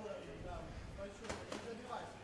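Raised voices shouting from around the cage during an MMA bout, with two sharp smacks close together about a second and a half in.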